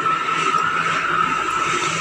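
Water being swirled by hand in a small glass tumbler: a steady swishing, with a faint steady high tone underneath.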